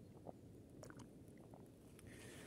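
Near silence: a man sipping quietly from a mug, with a few faint mouth clicks and swallowing sounds.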